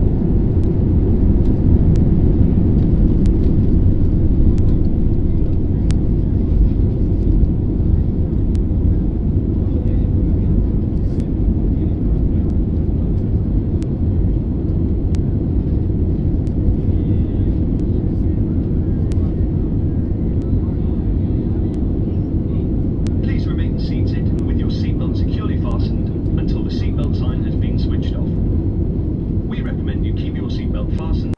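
Jet airliner engines and cabin noise heard from inside the cabin during the takeoff roll and climb-out: a loud, steady roar that eases slightly as the plane climbs. Voices come in over it for the last several seconds.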